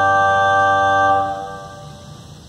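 Pipe organ holding a sustained chord that releases about a second in and dies away in the room's reverberation, leaving a low hiss.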